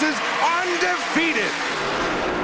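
A TV race commentator's raised, excited voice calling the finish. Beneath it, and alone near the end, is an even noise of NASCAR stock cars running down the straight.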